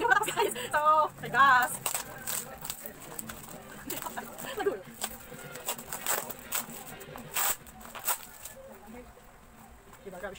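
Brief voice for the first second and a half, then clear plastic packaging crinkling and rustling in quick, irregular crackles as it is pulled open by hand, dying down near the end.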